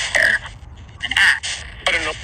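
Spirit box sweeping through radio stations, giving short, choppy bursts of garbled radio voice about a second apart. The investigator takes the fragments for spirit replies, captioned as "Don't care" and "I don't know, go and ask".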